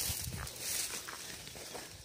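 Rustling and light footsteps through tall grass and dry leaf litter, a scattered crackle with no steady rhythm.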